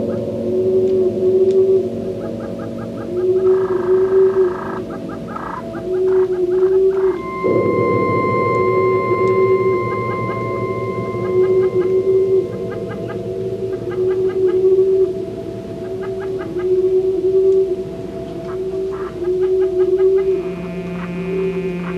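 Electronic ambient soundtrack: a short warbling tone recurs about once a second over a sustained drone. Steady higher tones enter about seven and a half seconds in and fade out a few seconds later.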